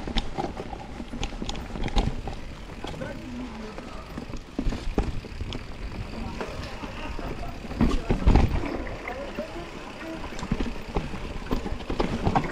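Riding noise of an enduro mountain bike descending a dirt forest trail: a steady rumble of tyres and wind on the camera microphone, with frequent clicks and knocks as the bike rattles over bumps, and a louder burst of rumble about eight seconds in.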